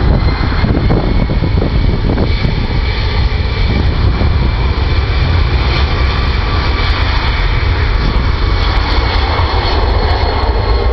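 Airbus A300 freighter's twin turbofan engines at takeoff power during the takeoff roll: loud, steady jet noise with a thin high whine on top.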